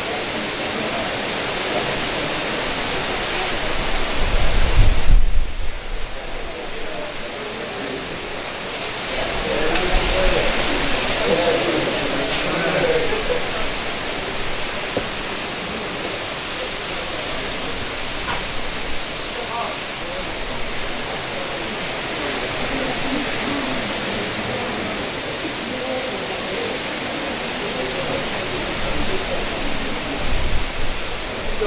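Indistinct murmur of voices from a small crowd of mourners over a steady rushing noise. About four to five seconds in, a low rumble of wind buffeting the microphone is the loudest sound, then dips away briefly.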